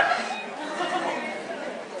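Audience chatter: a murmur of several voices talking at once.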